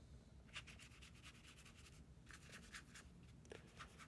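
Faint scratching of a watercolor brush stroking paint across watercolor paper. It comes in two runs of quick strokes, the first about half a second in and the second from a little past the middle until just before the end.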